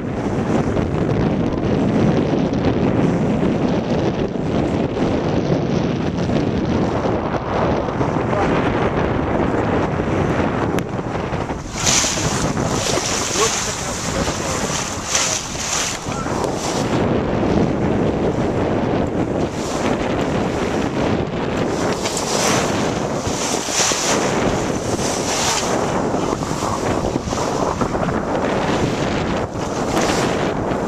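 Wind buffeting the microphone over water rushing along a sailboat's hull under way. From about twelve seconds in, repeated hissing surges of spray and waves come and go.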